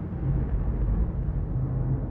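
Cinematic logo-intro sound effect: a deep low rumble with a low held tone, its higher part slowly fading.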